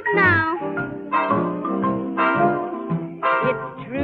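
1938 swing band recording playing an instrumental passage, with horn notes sliding up and down over a steady rhythm section. The sound lacks high treble, as in an old record.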